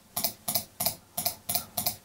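Computer mouse button clicked rapidly over and over, about four sharp clicks a second.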